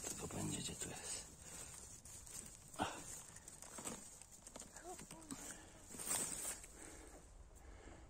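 Faint rustling of grass, moss and dry fern fronds and a few soft knocks as a hand works close around a boletus mushroom on the forest floor, with a sharper tap about three seconds in and a short rustle near six seconds.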